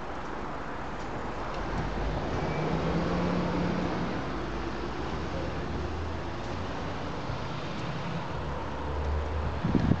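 Steady outdoor background noise with a low vehicle hum, a little louder about two to four seconds in, and some wind on the microphone.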